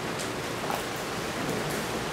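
Chalk on a blackboard: a few light ticks as short strokes are drawn, over a steady hiss of room noise.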